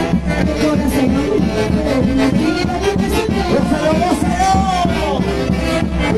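Live music from a Peruvian dance orchestra, with saxophones over bass and a steady beat.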